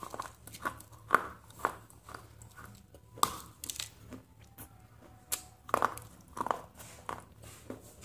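A thin, crisp snack being bitten and chewed close to the microphone: irregular sharp crunches, the loudest about a second in, near three seconds and around six seconds.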